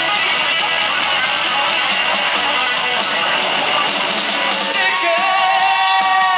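Live rock band playing loud, strummed electric guitars; about five seconds in, a singer comes in with a long held, slightly wavering note.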